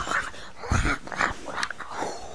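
A few short, rough vocal sounds in quick succession, the loudest about three-quarters of a second in.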